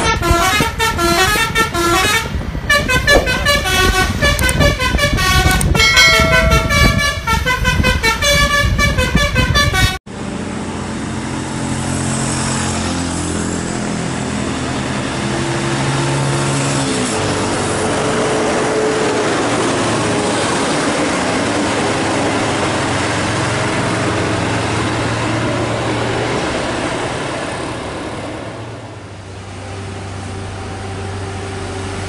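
For about ten seconds, rapid melodic multi-tone horn notes play one after another, then cut off suddenly. They are followed by a coach bus's diesel engine running steadily on the road, its pitch stepping with gear changes and fading near the end.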